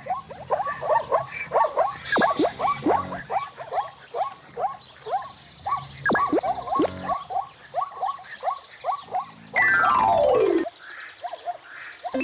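Zebra calling: a rapid run of short, high yipping barks, two or three a second, then a loud falling tone about ten seconds in.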